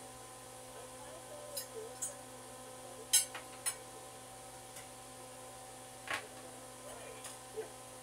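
Kitchenware clinking and tapping a few times, the loudest clink about three seconds in, over a steady electrical hum, with faint voices in the background.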